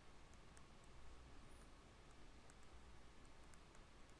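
Near silence: room tone with a faint low hum and scattered faint ticks, a stylus tapping and scratching on a tablet screen while writing.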